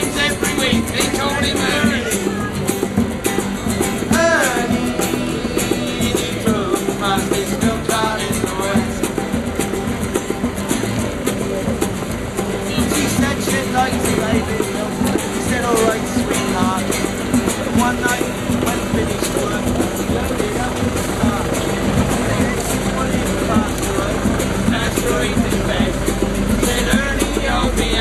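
Two acoustic guitars strummed together with a hand drum keeping the beat, with a voice heard over the playing at times.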